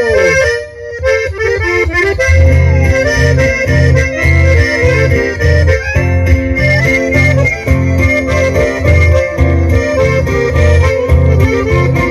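Live chamamé played on piano accordion and bandoneón over strummed acoustic guitars, the reeds carrying the melody over a steady, rhythmic bass pulse.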